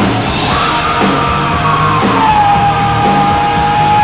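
Heavy rock band playing live, with electric guitar and drums, topped by a long, high yelled vocal note that starts about half a second in, drops in pitch about two seconds in and holds there.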